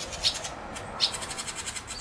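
Small birds chirping faintly in the background, a scattering of short high calls.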